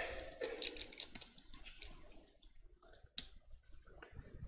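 Crinkling and clicking of plastic communion packaging being worked open by hand close to a microphone. It is louder at the start, then goes on as fainter irregular crackles, with one sharp click about three seconds in.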